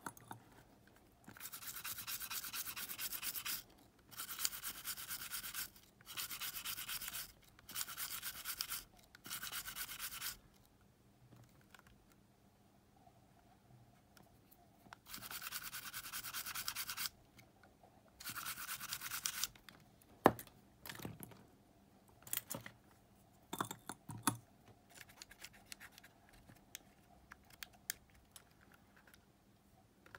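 Cotton swab scrubbing the tape mechanism of a Sony Walkman WM-EX610 cassette player in repeated scratchy bursts of a second or two each, cleaning it during a belt replacement. From about twenty seconds in, only scattered light clicks and taps from handling the player.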